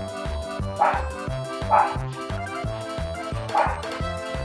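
Background music with a steady, repeating bass beat, over which a small Pomeranian-Chihuahua mix dog gives three short, high yips: one about a second in, one near two seconds, and one near the end.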